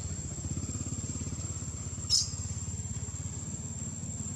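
A small engine idling steadily, a low, evenly pulsing rumble, under a thin steady high-pitched whine. A short, sharp high squeak, the loudest sound here, comes about two seconds in.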